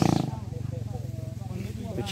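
A motorbike engine running loud, cutting off about a quarter second in. A lower, steady engine hum then carries on under faint murmuring voices.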